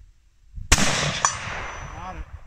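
A single gunshot from a long gun about two-thirds of a second in, its report rolling away in a long echo, with a second, smaller sharp crack about half a second after the shot.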